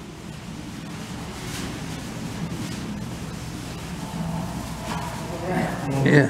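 Indistinct voices in the background over a steady rushing noise, with the voices getting louder near the end.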